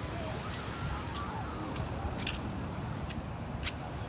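Outdoor seaside ambience: a steady low rumble with a few sharp clicks scattered through it and faint wavering sounds in the background.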